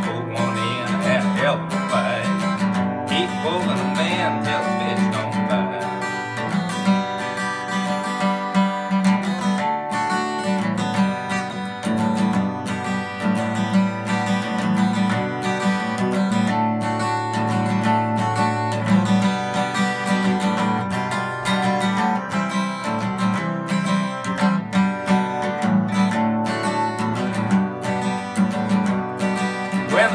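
Steel-string acoustic guitar strummed steadily in a country style, played solo as an instrumental break between the song's verses.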